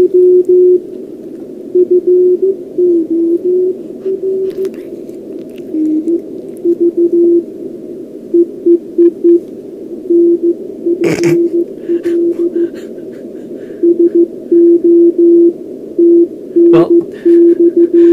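Morse code being received on a homebrew SST 20-metre QRP CW transceiver through an external amplifier's speaker: a single low tone keyed in dots and dashes over steady receiver hiss. Its pitch shifts slightly now and then as the receiver is tuned. A sharp knock comes about eleven seconds in.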